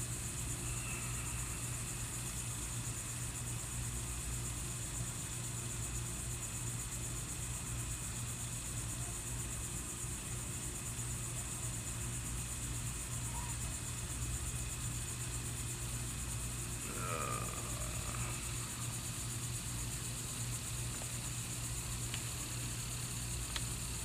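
A steady low mechanical hum from a running machine, with a steady high hiss over it.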